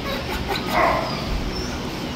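A dog barks once, short, just under a second in, over a steady low hum.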